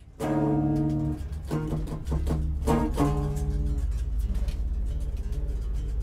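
A few plucked notes on an amplified string instrument, played in short phrases over the first three seconds or so. Under them a low amplifier hum sets in, followed by a fast run of light ticks.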